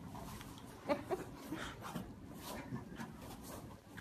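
Quiet grunts and strained breathing of two men grappling on a mat, with two short effortful vocal sounds about a second in.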